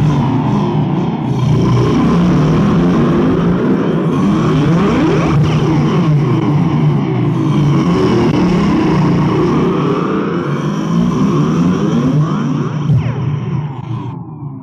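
Raw black metal/noise from a 1990 cassette EP: a loud, dense wall of distorted noise with a heavy low drone and many sweeping, swirling pitch glides, fading a little near the end.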